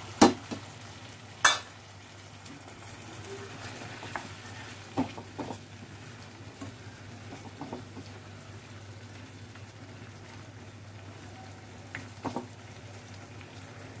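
Chicken pieces frying with a steady low sizzle in spiced masala liquid in a non-stick pan, stirred with a silicone spatula. Two sharp clinks come in the first couple of seconds, and a few soft knocks of the spatula against the pan follow.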